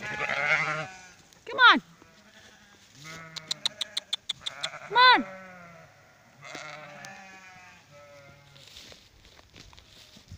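Sheep bleating repeatedly: several wavering bleats, with two loud, short bleats that fall in pitch, one in the first two seconds and one about five seconds in. A quick run of faint clicks sounds in the middle.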